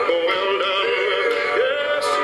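Music with several voices singing together, the voices wavering with vibrato and sliding between notes.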